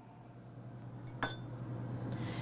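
A single metallic clink about a second in, ringing briefly, as stainless-steel kitchenware is knocked while being handled, over a low steady hum.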